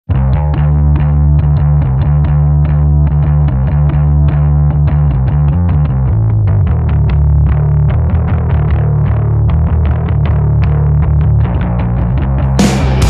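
Intro of a stoner rock song: a heavily distorted, effects-laden electric guitar riff with a deep, heavy low end, in a quick run of picked notes.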